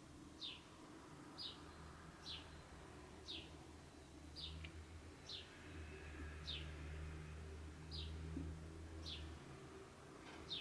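A bird calling faintly with short chirps that fall in pitch, about one a second, over a low steady hum.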